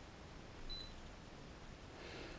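Quiet room tone with one faint, short high-pitched beep about two-thirds of a second in.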